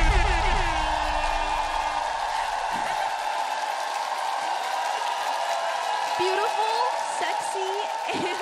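A deep bass note at the end of a backing track, fading out over the first three or four seconds, under steady audience noise with scattered voices.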